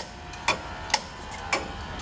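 Pressure-pump toggle switch and electromagnetic pump clutch on an Amtex Marine 3047, with the engine off: a series of sharp clicks about every half second as the switch is flicked off and on and the clutch magnet engages and releases.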